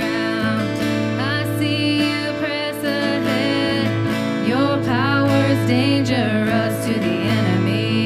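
Live worship band playing a contemporary praise song: women singing the melody over electric guitar, keyboard and drums.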